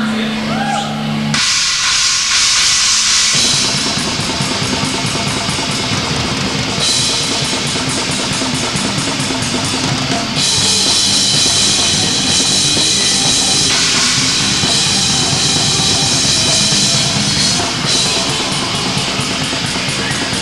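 A live rock band with two electric guitars, bass and a drum kit starting a song. A held note gives way to a cymbal crash about a second and a half in, and the full band comes in a couple of seconds later with drums and cymbals prominent.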